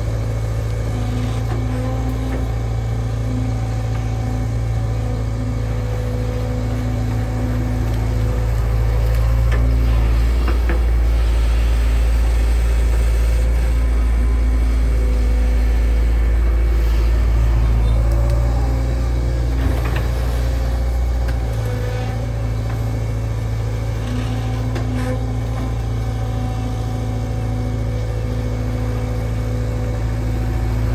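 Diesel engine of a Sumitomo SH long-reach excavator running steadily with its hydraulics working the boom and bucket. It gets louder from about eight seconds in and drops back about twenty-one seconds in.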